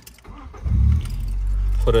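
A 2001 Ford Mondeo's engine is started, heard from inside the cabin. A loud surge about half a second in catches and settles into a steady low idle.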